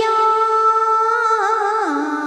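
A woman singing a long held note to close a phrase of a Vietnamese bolero, with a short wavering turn and a downward slide near the end.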